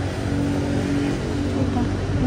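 A motor vehicle's engine running steadily, a low hum with a brief held tone in the first second.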